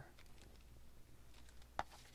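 Faint handling of a kraft-paper piece on a craft desk, with one sharp click near the end.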